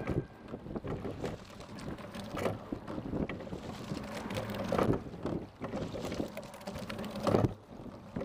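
A single scull being rowed: a knock with each stroke about every two and a half seconds, over steady water noise along the hull and wind on the microphone.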